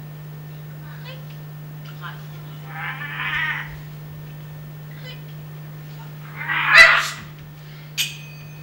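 Two breathy hissing bursts, most likely mouth-made sound effects: one about three seconds in and a louder one near seven seconds. A steady low electrical hum runs underneath.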